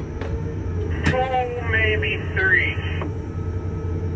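A two-way radio voice comes through the crane cab for about two seconds, starting with a click about a second in, thin and cut off sharply at the end. Under it runs a steady low hum from the tower crane cab as the crane moves.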